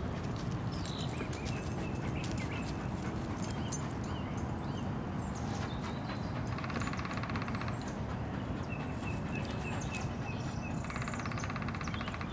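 A greyhound panting close by over a steady outdoor rumble. Short, high, falling chirps recur in the background, and two brief buzzing trills come in, one past the middle and one near the end.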